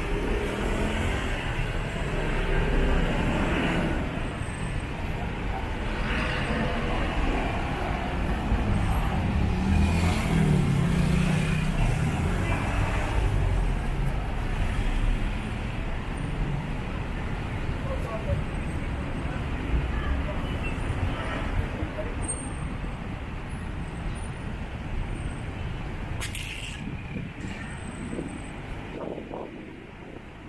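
City street ambience: road traffic of cars and trucks going past, with passers-by talking. It is loudest in the middle and quieter near the end.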